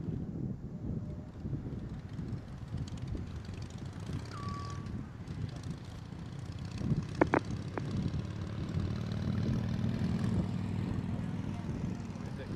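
Low, steady rumble of a Space Shuttle launch heard from the ground, the rockets far off in the climb, swelling slightly near the end. A short high tone sounds about four seconds in.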